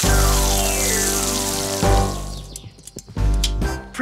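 Cartoon sound effect of a garden hose spraying a strong jet of water: a hiss that fades out after about two seconds, over background music.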